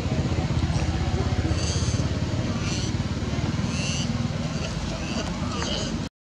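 A motor engine running steadily at low revs, a low rumble with a fast even pulse, with brief high chirps about once a second over it.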